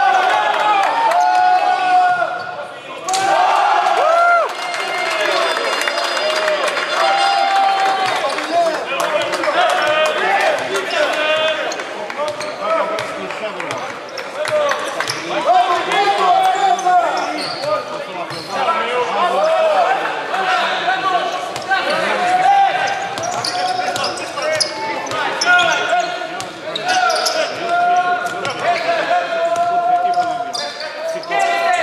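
Basketball game sounds echoing in a large hall: sneakers squeaking on the hardwood court, the ball bouncing, and players' shouts.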